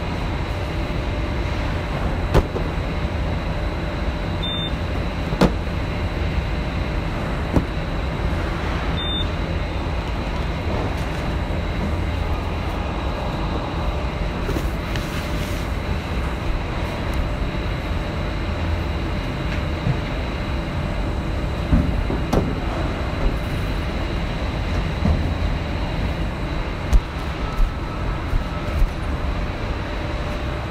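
Factory machinery running: a steady low rumble with a faint high whine over it, and scattered sharp clicks and knocks that come more often in the second half.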